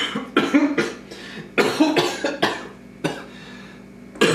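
A man's coughing fit: about ten short coughs in quick succession, in two bunches, easing off about three seconds in. He is choking on a mouthful of food spiced with cayenne pepper.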